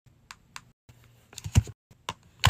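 Cosmetic containers (a powder jar and a round compact) being handled and set into a padded, divided makeup bag: a couple of light clicks, then a louder cluster of clicks and taps about one and a half seconds in.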